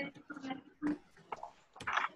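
Short, broken vocal sounds, a person murmuring in brief fragments about five times in two seconds, with light computer keyboard typing.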